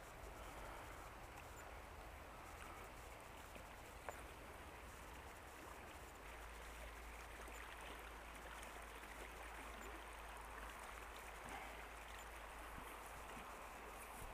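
Faint, steady rush of flowing river water, with a single short click about four seconds in.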